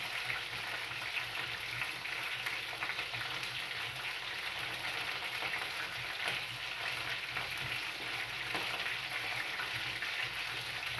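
Meat frying in oil in a frying pan: a steady sizzle with scattered small crackles.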